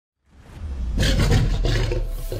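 A lion's roar sound effect, rising out of silence with a low rumble and at its loudest from about a second in.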